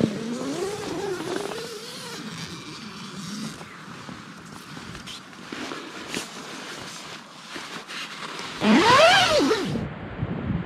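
Tent door zipper and nylon rustling as the tent is opened and boots are pulled on, with scattered short clicks and scrapes. About nine seconds in, the loudest sound is a single voice-like call that rises and then falls in pitch.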